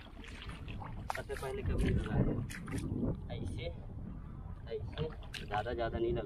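Feet sloshing and squelching through the water and mud of a flooded rice paddy, with people talking in the background.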